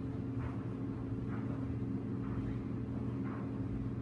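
A steady low mechanical hum, with faint soft sounds about once a second over it.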